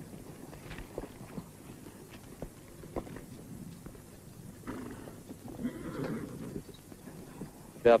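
Horses standing and shifting, with scattered faint hoof knocks and clops. About five seconds in there is a longer, breathy horse sound lasting a couple of seconds.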